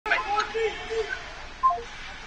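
Voices calling out in an ice hockey arena during play, short shouts over the rink's steady background noise, with a brief two-note call near the end.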